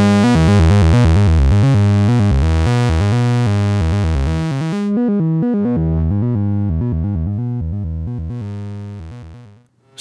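Analogue oscillator waveforms from a Livewire AFG mixed through the Erica Synths Fusion tube VCO mixer, stepping through quantized random notes from a sample-and-hold, with a fuzzy tube-saturated top. About halfway the bright top drops away, leaving a duller tone that fades out just before the end.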